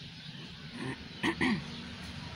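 A woman with the flu clearing her throat: two short, throaty sounds with a falling pitch about a second and a quarter in.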